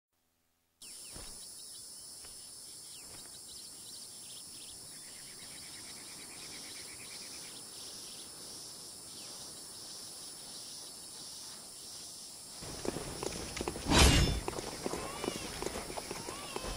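Ambient noise intro of a song recording: a steady hiss-like bed with faint clicks and a brief buzz. From about thirteen seconds in it grows fuller and louder, with a thud near fourteen seconds and a few short gliding tones.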